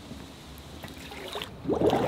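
Pond water sloshing as a mesh fish trap is lowered in and sunk, with a louder splash near the end as a hand plunges into the water.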